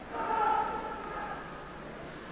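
Ice hockey arena crowd noise on the broadcast feed. Near the start a faint held tone rises out of it and fades within about a second and a half.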